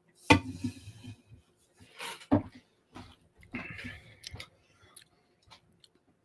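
Beer tasting at a table: the sharp sudden sound of a glass set down or knocked just after the start, then a few short sips, swallows and breaths out.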